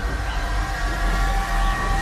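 Cinematic sci-fi sound effect for a flight through a portal of light: a deep steady rumble under a hiss, with several high tones held together over it.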